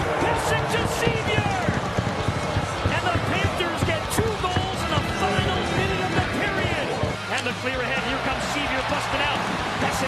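Ice hockey game sound: repeated sharp knocks and clacks of sticks, puck and boards, with music and indistinct voices underneath.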